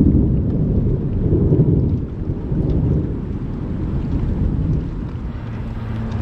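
Thunder rolling: a long low rumble that swells during the first couple of seconds and fades away near the end.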